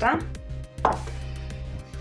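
A wooden pestle knocks sharply once, about a second in, on dried comfrey root pieces in a marble mortar, as the root begins to be crushed.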